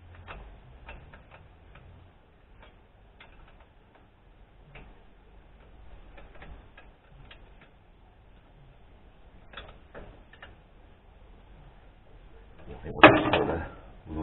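Ratchet clicking in scattered strokes as a 9/16 in (14 mm) bolt on the A/C compressor bracket is undone, with a louder clatter about a second before the end.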